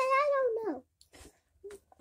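A young girl's high-pitched voice holding a drawn-out, wordless vowel that falls in pitch and stops under a second in, followed by a couple of faint clicks.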